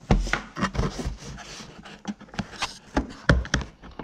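A screwdriver clicking, knocking and scraping against the plastic inner fender panel of a Honda Pioneer 1000-6 side-by-side while its fasteners are worked loose. The clicks and knocks come irregularly, several a second, with rubbing in between.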